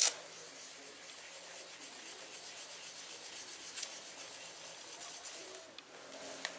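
Round ink-blending tool rubbing and dabbing ink onto a paper tag, faint irregular scratchy strokes, with a short knock at the very start.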